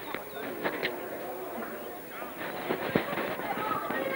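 Faint outdoor voices of spectators and players talking and calling around the field, with no single loud event, during a stoppage.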